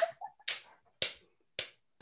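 Quiet breathy laughter: four short puffs of breath about half a second apart, with near silence between.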